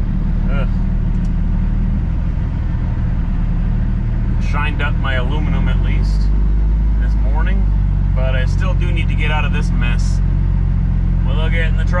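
Semi truck's diesel engine pulling slowly, heard from inside the cab: a steady low drone whose note changes about halfway through, with a man talking over it in the second half.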